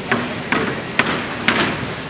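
Hammer strikes on a construction site: four sharp blows, about two a second, over steady site noise.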